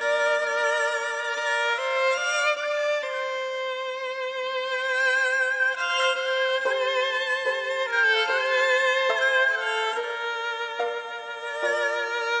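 Violin and haegeum (Korean two-string fiddle) playing a slow melody together in long held notes with vibrato, coming in loudly at the very start.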